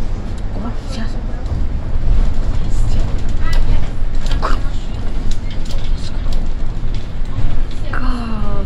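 Solaris Urbino 18 articulated city bus driving, heard from the driver's cab: a steady low rumble with scattered rattles and clicks.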